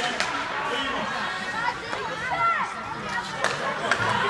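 Indistinct voices and calls from spectators and players around an ice hockey rink, with two sharp knocks, one just after the start and one near the end.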